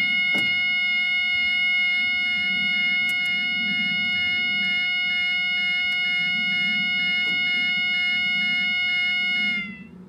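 Level crossing flat-tone alarm sounding one steady, unbroken tone. It cuts off about nine and a half seconds in, its pitch dropping slightly as it dies.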